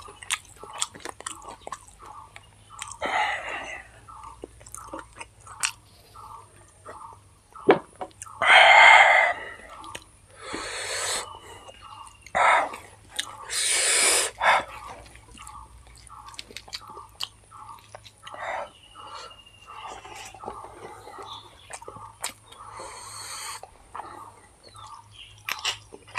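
Close-miked mouth chewing of rice biryani, a steady run of soft wet chews about two a second. A few louder, longer noisy bursts break in, one as fingers gather rice on a steel plate.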